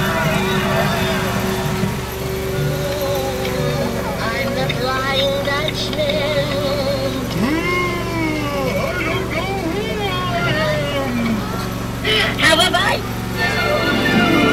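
Loudspeaker playback of music and warbling, gliding voice-like sound effects, over a steady low hum from the ride train's engine, with a brief louder burst near the end.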